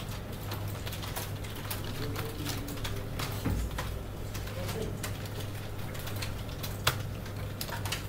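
Scattered, irregular clicks of a computer keyboard and mouse over a steady low electrical hum in a room, with one sharper click near the end.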